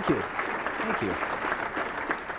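Audience applauding: many hands clapping in a steady patter, with two short falling voice sounds, near the start and about a second in.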